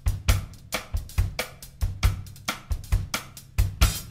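Drum kit playing a jazz groove on its own: kick drum, snare and hi-hat/cymbals in a steady beat, with two to three strong kick and snare strokes a second.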